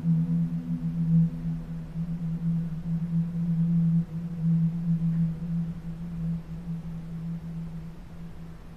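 A low, sustained droning tone from the background score, wavering slightly in loudness and fading toward the end.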